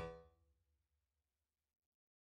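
A single note on a software keyboard instrument with a piano-like tone, sounded once as the note is clicked in a MIDI editor and dying away over about a second, then near silence.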